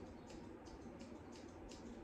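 Kamisori Kumori Pro 7.5-inch thinning shears snipping through a dog's fine hock hair: a quick, even run of faint snips, about five a second.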